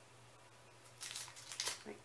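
Faint steady hum, then a few short crinkling rustles of cosmetic sample packaging being handled about a second in; a voice begins just at the end.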